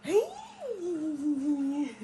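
A voice humming one long note that swoops up, falls back and then holds steady for over a second.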